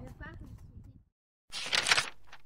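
Faint outdoor background with a brief snatch of voice fading out in the first second. After a short silence, a loud, short swoosh sound effect comes in about one and a half seconds in, as the scene cuts to a title card.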